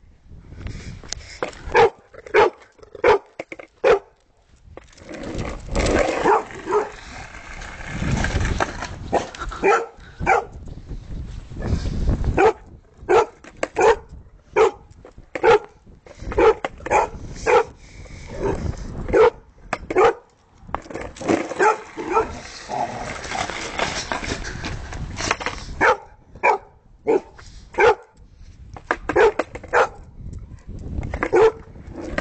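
A dog barking repeatedly at a skateboard in short, sharp barks, often several in quick succession. Twice a longer stretch of low, rumbling noise runs under and between the barks.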